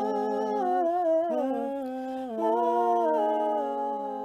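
Music: layered hummed vocal harmonies holding sustained chords, shifting to a new chord about a second in and again just past two seconds, then fading near the end.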